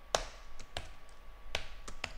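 Typing on a computer keyboard: four separate key clicks, unevenly spaced.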